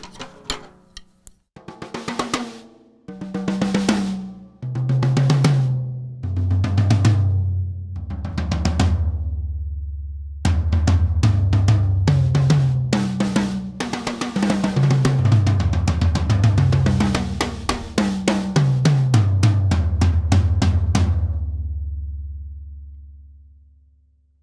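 TAMA Superstar Classic thin maple toms, with no dampening, struck in turn from the highest rack tom down to the lowest floor tom. Then come quick fills that run from high to low several times, with the last floor-tom note ringing out and fading near the end. The snare wires are engaged throughout.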